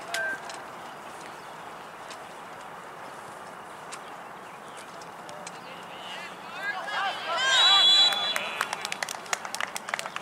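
Players and sideline shouting across an outdoor soccer field, rising to the loudest shouts about seven to eight seconds in, where a short, steady, high referee's whistle blast sounds. A quick run of sharp ticks follows near the end.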